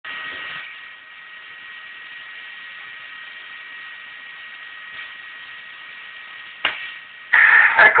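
Steady hiss with a faint whine from a radio scanner's speaker tuned to 145.800 MHz FM, with a single click late on. Near the end a man's voice breaks in, the downlink from the International Space Station's amateur radio station.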